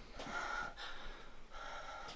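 A person gasping and breathing hard in a few short breaths, as in acting out a struggle.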